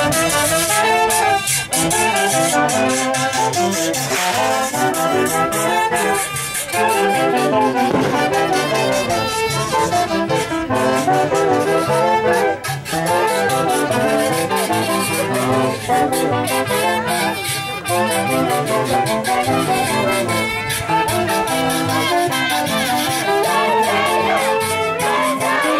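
Live wind band of saxophones and clarinets playing a tune in several parts, over a regular beat of drum strokes.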